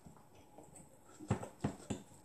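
A person chewing a mouthful of sticky rice with wet, open-mouthed smacks: three quick smacks about a third of a second apart in the second half.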